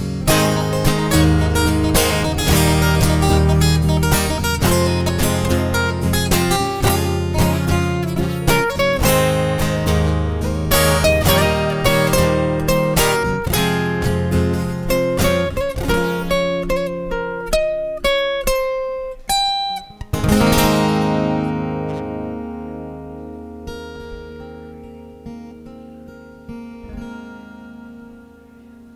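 Acoustic guitars playing the song's instrumental ending: steady picked and strummed chords, then a short run of single notes, and a final strummed chord about twenty seconds in that rings out and slowly fades.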